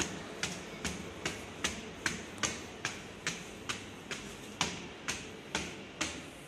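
Footsteps climbing a stairway: hard shoe soles tapping on the steps, a little over two steps a second, steady throughout.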